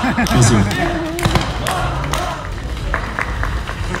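Voices talking off-microphone, not clear enough to make out, with a few short knocks or thuds.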